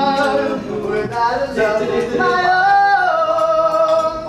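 A vocal group singing held notes in close harmony, with one voice sliding up and back down about two and a half seconds in.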